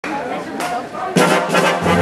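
Swing big band playing, trumpets and trombones to the fore. The full band comes in loudly about a second in, with a low bass line joining just before the end.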